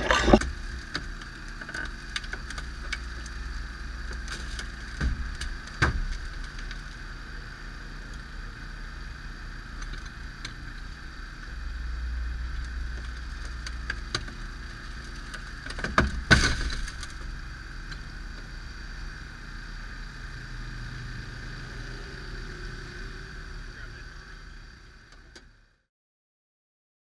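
Engine-driven hydraulic power unit running steadily with a steady whine while Hurst hydraulic spreaders force open a car door. A few sharp cracks come as the door metal gives, the loudest about sixteen seconds in. The sound fades out near the end.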